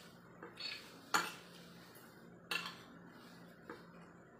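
A metal knife and spoon clinking and scraping on a ceramic plate as food is cut, with several sharp clinks, the loudest about a second in.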